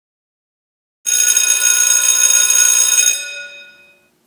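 School bell ringing loudly for about two seconds, then ringing out and fading away.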